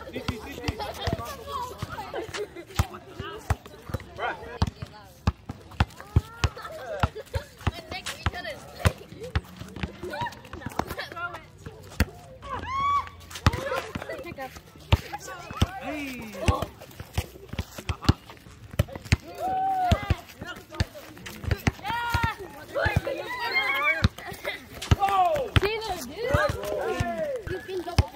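Several voices calling and shouting, with many sharp knocks scattered throughout from the volleyball being hit. The voices grow busier and louder in the second half.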